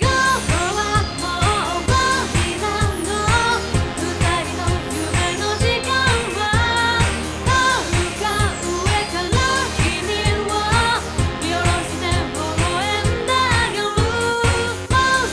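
Asian pop song with a woman singing over a quick, steady dance beat, starting abruptly at full level.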